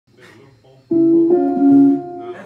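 Electric guitar through an amplifier: quiet at first, then about a second in a few notes are struck in quick succession and left ringing.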